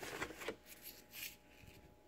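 Faint rustling and crinkling of a foil bag as a hand rummages in it and pulls out a single-serve coffee pod, a few short rustles in the first second and a half, then quieter.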